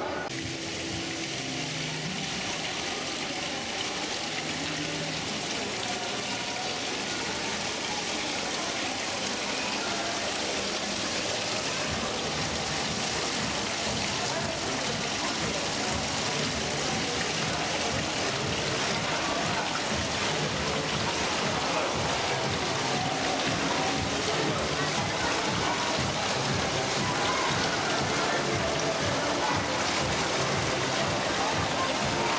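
Steady rush of running water from an artificial rock waterfall and pool, growing slowly louder, with indistinct voices and music behind it.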